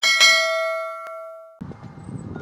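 A bell-chime sound effect for a subscribe animation: one struck bell tone with many overtones, ringing and fading, with a faint click midway. It cuts off suddenly about a second and a half in, giving way to outdoor background noise.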